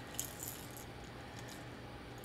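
Faint handling noise of hard plastic fishing lures: a small click shortly after the start and a light rattle as a lure is picked up in gloved hands.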